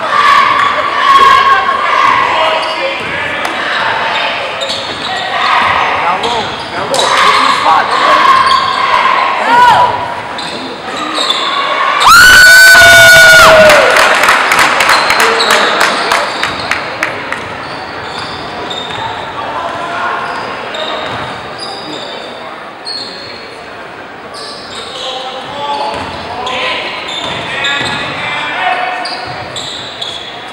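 Basketball game sounds in a gymnasium: a ball dribbled on the hardwood floor, sneakers squeaking and voices calling out across the hall. About twelve seconds in, a loud steady horn sounds for nearly two seconds.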